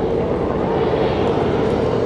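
Aircraft overhead: a steady rushing engine drone with no break.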